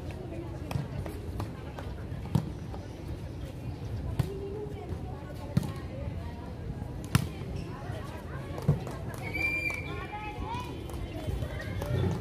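Volleyball being struck by players' hands and arms in a rally: five sharp hits, roughly one every one and a half seconds, over players' calling voices. A brief high-pitched tone follows about nine and a half seconds in.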